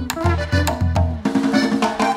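Live band music, with a bass line and drums playing a steady groove. About a second in, the bass drops out and the drums play a quick fill.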